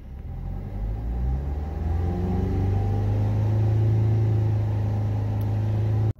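Maruti Suzuki Ertiga diesel engine revved from idle with the car standing still, heard from inside the cabin. The pitch rises over the first few seconds, then holds steady at about 3000 rpm.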